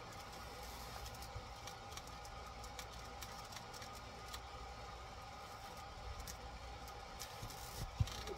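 Faint clicks and rustles of hands fitting the motor wires and connectors on a radio-controlled car, over a steady low hum, with one sharper click at the very end.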